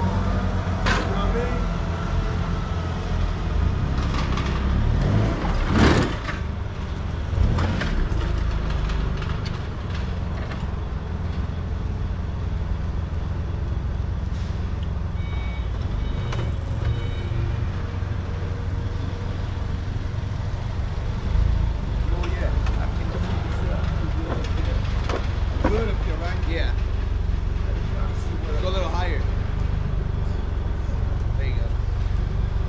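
A forklift engine runs under a steady low hum while the forklift carries a pallet of roof tile toward a pickup bed. There is a loud clank about six seconds in, and a few short beeps come in the middle.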